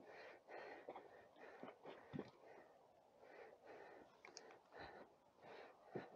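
Near silence with a hiker's faint, repeated breathing close to the microphone as he clambers down a boulder field, and a few light clicks of steps on rock.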